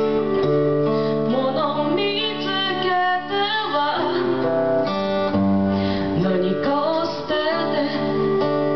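Live acoustic band playing a song: strummed acoustic guitar and bass guitar under a woman's singing voice, with an end-blown flute.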